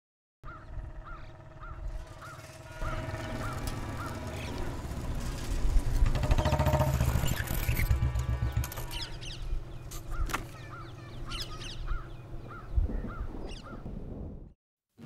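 Rural outdoor ambience: a bird calls in a quick series of short repeated notes near the start and again later, over a low rumble that swells in the middle. There is one sharp click about ten seconds in.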